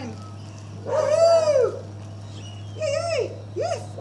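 Small dog giving excited, high-pitched yelping barks: one long rising-and-falling yelp about a second in, then two shorter ones near the end.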